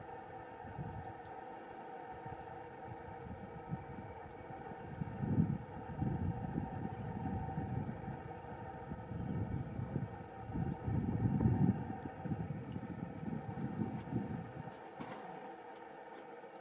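A vehicle engine idling with a steady hum, with irregular low rumbling that swells from about five seconds in and dies away near the end.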